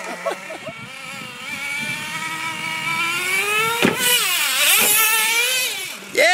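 Traxxas Revo nitro RC truck's small two-stroke glow engine running at a high, whining pitch that climbs steadily as the truck accelerates away. A sharp click comes a little before the four-second mark, and the revs then swing up and down toward the end.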